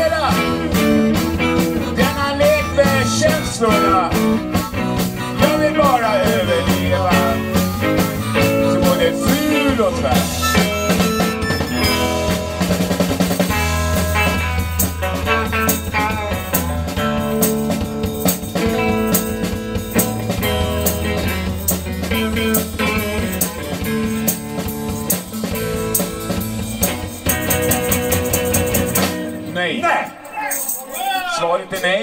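Live blues band playing an instrumental break: an electric guitar lead with bending notes over bass and drum kit, with harmonica in the first part. The bass and drums drop out just before the end as the song finishes.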